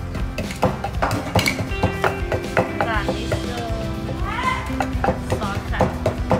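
Wooden pestle pounding in a wooden mortar, a knock two or three times a second, coarsely crushing ingredients for a chicken marinade, over background music. In the middle, a few rising, meow-like calls.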